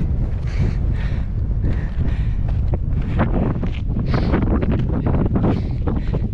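Wind buffeting the microphone, a loud steady rumble, with irregular short rustles and knocks over it.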